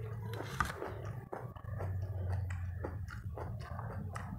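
Close-up mouth sounds of a person chewing a mouthful of rice and chicken: a run of short wet smacks and clicks, over a low hum that comes and goes.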